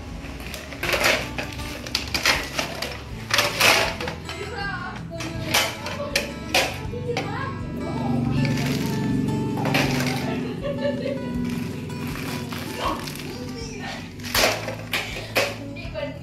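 Background music over the clatter of small plastic toy cookware being handled, with a series of sharp knocks, most of them in the first half and a few more near the end.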